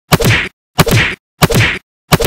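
Repeated whacks of a blanket-wrapped bundle swung as a club, three in a row about two-thirds of a second apart, each a sharp crack with a short rustling tail.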